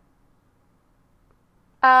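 Near silence: room tone, broken near the end by a woman's voice saying "uh".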